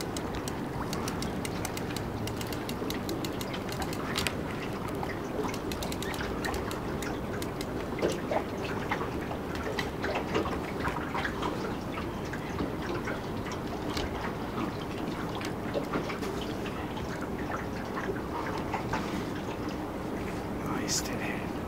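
Steady water noise against a small aluminium fishing boat's hull, with scattered light clicks and knocks.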